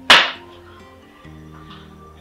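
Soft background music with long held notes. Right at the start there is one short, sharp sound that fades within a quarter second.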